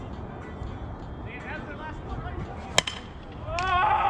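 A single sharp crack of a softball bat striking the ball, nearly three seconds in, followed by a raised voice calling out.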